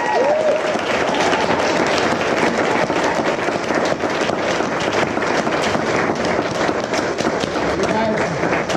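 A crowd of dance students applauding steadily, with a few whoops just after the start.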